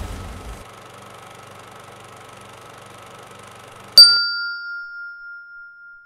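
A faint low steady drone, then about four seconds in a single sharp bell-like ding that rings on, fading slowly.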